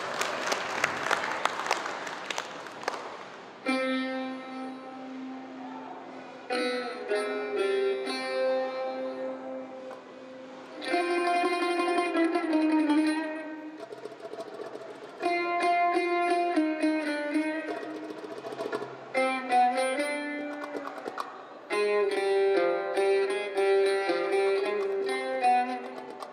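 Oud played solo, phrases of plucked notes separated by short pauses, after a brief noisy swell in the first few seconds.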